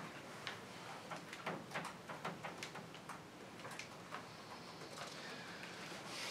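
Faint, irregular small clicks and ticks, a few a second, over a low hiss.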